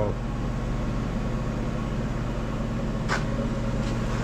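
Steady mechanical hum with a few fixed low tones over a background hiss, with one faint tick about three seconds in.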